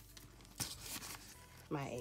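Faint rustling of paper planners and notebooks being handled in a fabric tote bag, with a light tap about half a second in. A woman's voice comes in near the end.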